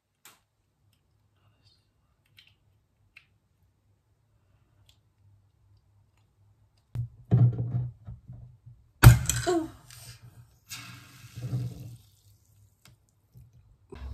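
Ramune soda bottle being opened. After several seconds of near silence and some handling, there is a sharp pop about nine seconds in as the marble seal is forced down into the neck. A short hiss of escaping fizz follows.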